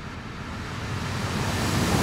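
A rushing noise with no pitch or beat that swells steadily louder, a riser-style transition effect between two pieces of background music.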